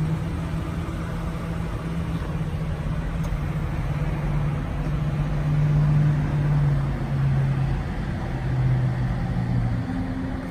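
A car engine running steadily, a low hum that drifts slightly lower in pitch in the second half.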